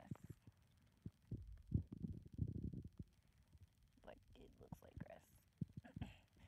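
Low muffled knocks and rumbles of a handheld phone being moved and brushed close to the ground, with faint murmured speech in the second half.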